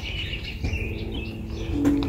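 Small birds chirping, over a low steady hum and rumble.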